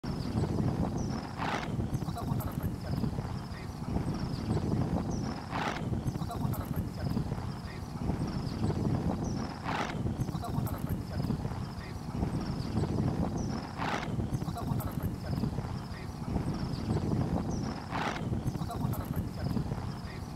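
An added background audio track with a steady clip-clop-like rhythm and a sharp accent repeating about every four seconds.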